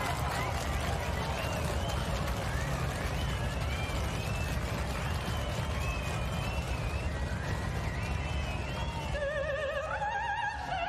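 Audience applause and whooping mixed with water splashing as a line of performers runs through a shallow stage pool. Near the end an operatic voice with wide vibrato comes in over orchestra.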